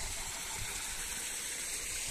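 Water running steadily: a small spill of rain runoff falling from a gap in the eroded bank into a pool.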